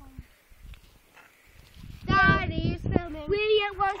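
A child's voice calling out in a high, wavering sing-song from about halfway in, ending on one long held note; the first half is quiet.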